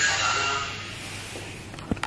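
A single sharp click near the end, as the rotary power switch on the perfume chiller's control panel is turned on. Before it, a faint background sound fades over the first second.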